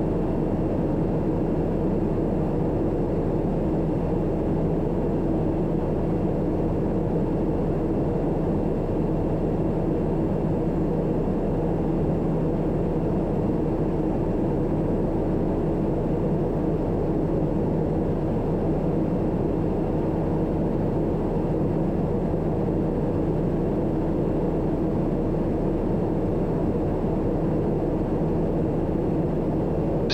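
Steady cabin drone of the Daher TBM 960's turboprop engine and propeller in flight, heard from inside the cockpit. It is even and unchanging, a low hum with a few steady tones in it.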